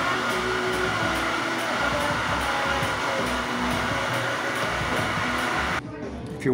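A café coffee machine running with a loud, steady rushing noise that cuts off abruptly near the end, over faint background music.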